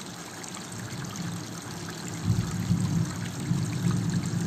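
Steady background noise that sounds like running water. A low rumble joins it about two seconds in and grows louder.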